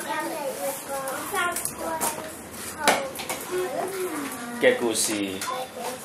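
Young children's voices speaking quietly, with a sharp click about three seconds in.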